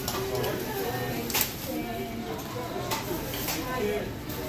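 Indistinct voices talking, with plastic bags rustling and two short sharp clicks, one about a second and a half in and one about three seconds in.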